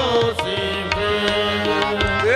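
Live qawwali music: harmoniums holding steady chords under a running pattern of tabla strokes, with a singer's held note sliding down and away at the start.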